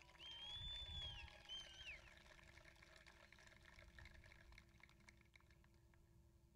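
A person in the crowd cheering with a high whistle. It comes as one long steady note of about a second that drops at the end, then a short second note. After that there is near silence.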